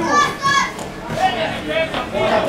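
Shouting voices at a football ground, with a high, loud call in the first half-second and quieter calls after it.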